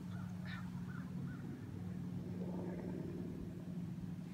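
A steady low hum, like a motor running, with a few faint short bird-like chirps over it.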